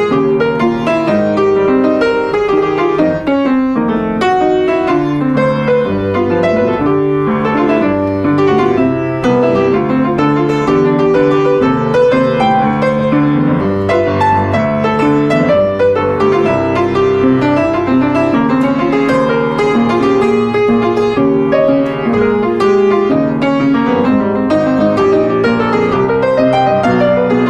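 Jazz piano solo: chords under a continuous stream of short melodic notes.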